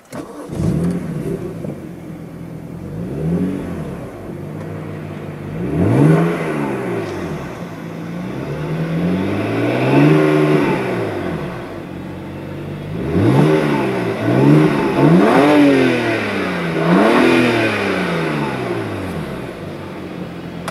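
BMW Z4 sDrive35i's 3.0-litre twin-turbo inline-six starting up, with a brief flare just after it catches, then idling in Park. It is revved in about seven rising-and-falling blips, the longest and highest about halfway through, and drops back to idle between them.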